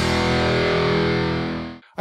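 A heavy metal band's final chord ringing out: a distorted electric guitar through a tube amp head and speaker cabinet, with cymbals washing over it. It fades and dies out just before two seconds.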